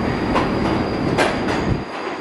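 New York City subway train pulling into a station: a steady rumble and rush of the cars passing, with a thin steady high whine and several sharp clicks of the wheels crossing rail joints.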